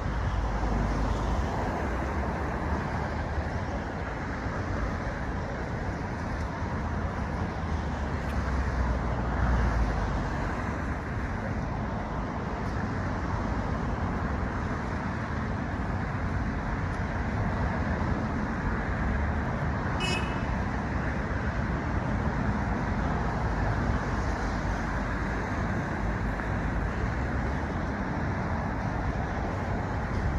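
Steady low background rumble of outdoor noise, with one short high chirp about two-thirds of the way through.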